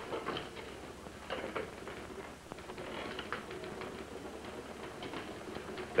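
Faint, scattered light taps and clicks, with papers being handled at a desk.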